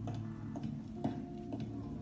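Faint ticking, about two ticks a second, over a low steady hum.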